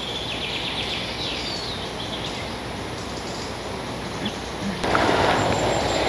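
Outdoor forest ambience: a steady hiss of background noise with a few faint bird chirps in the first second or so. The background noise grows louder near the end.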